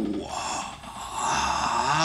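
A man's long, breathy sighs of relief, two in a row, as he relaxes.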